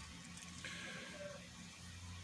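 Quiet room with a low steady hum and a faint rustle of a kraft paper pouch being handled in the middle.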